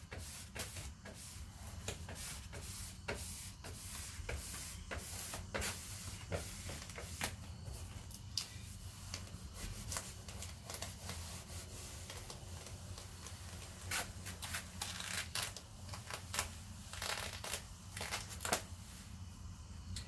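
Faint, irregular crackling and rustling of vinyl wrap film being handled and smoothed onto a car door by hand, over a low steady hum.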